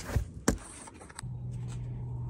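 Three sharp knocks in the first half second, then a steady low hum that starts a little after a second in.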